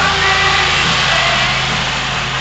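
A small utility cart's engine running steadily close by, with music playing faintly behind it.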